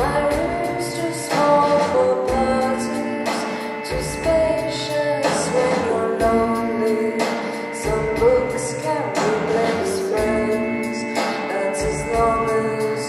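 Live band performing a song: a woman sings over electric guitar, keyboards and a steady drum beat.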